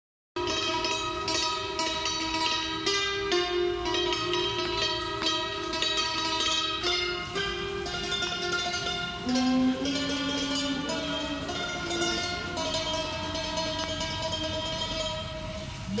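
Thai khim, a hammered dulcimer, struck with bamboo mallets and playing a slow melody; each note rings on under the next.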